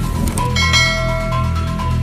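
Background electronic music with a bright bell-like ding, a subscribe-button notification sound effect, starting just under a second in and ringing for about a second.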